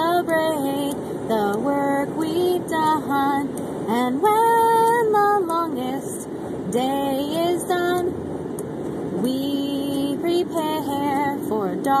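A woman singing unaccompanied, with long held notes, over the steady road noise inside a moving car.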